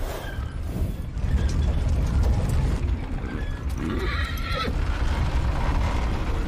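A horse whinnies once, briefly, about four seconds in, over a steady low rumble.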